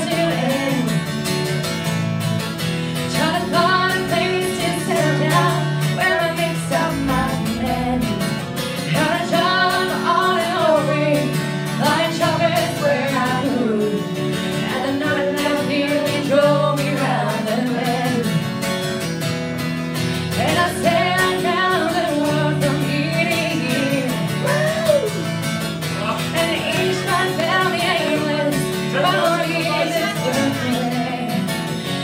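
A woman singing a country-style song live, accompanied by guitar, her melody running over steady repeated low notes.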